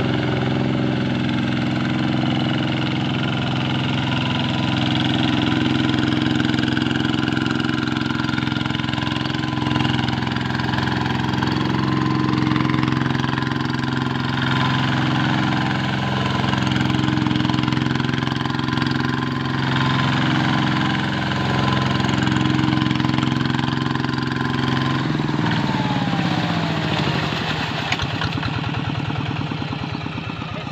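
Two-wheel hand tractor's single-cylinder diesel engine running steadily under load as it drags a levelling board through paddy mud. About 25 seconds in, the engine slows and its pitch falls as it is throttled back.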